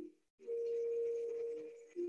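Meditation music of held pure tones in the manner of crystal singing bowls. The sound breaks off into a brief silence just after the start, then a higher tone holds for about a second and a half, and a lower tone takes over at the end.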